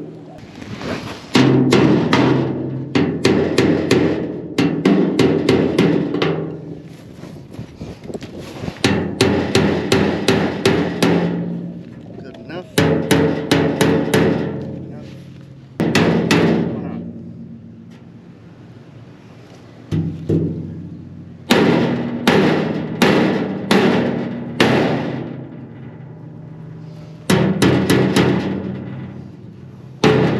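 A hammer striking the metal of a trailer in about half a dozen bursts of rapid blows, several a second, with a ringing metallic tone after the strikes and short pauses between bursts, hammering a part of the trailer down.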